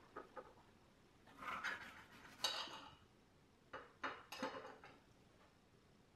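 Faint clinks and knocks of fruit and a plate being handled on a table, in a few short, irregular bursts.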